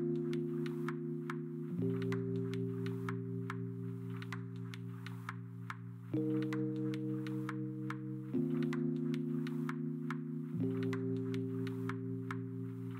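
Background music: soft, sustained synth chords that shift every few seconds over a light, steady ticking beat.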